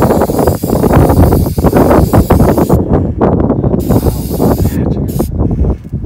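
Aerosol spray-paint can hissing as paint is sprayed onto a painted car body: one long spray of about three seconds, a brief break, a second shorter spray, then it stops. A loud, rough rumbling noise runs underneath throughout.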